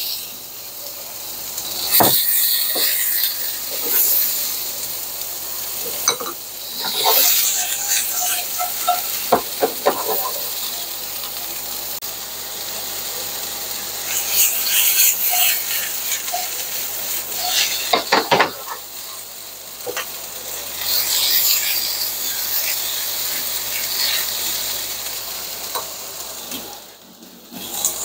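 Sliced onions sizzling in hot canola oil in a frying pan, with tongs clicking and scraping against the pan as the onions are tossed, in clusters about two seconds in, between about six and ten seconds, and again around eighteen seconds.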